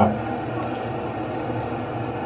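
Steady background hiss, even and unbroken, with no distinct events.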